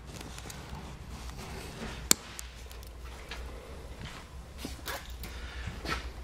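Nylon wire ties being trimmed with clippers: one sharp snip about two seconds in, then a few fainter clicks.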